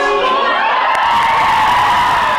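A women's a cappella song ends at the very start, and a small crowd breaks into cheering, with one long high whoop held from about half a second in.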